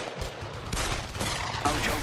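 Dense, continuous crackle of rapid gunfire, a battle sound effect laid over the parody front-line report.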